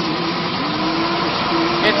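Vehicle engine idling steadily, with a faint voice in the background.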